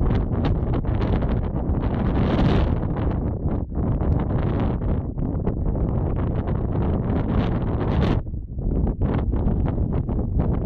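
Wind buffeting the microphone in gusts, a heavy low rumble that lulls briefly about eight seconds in.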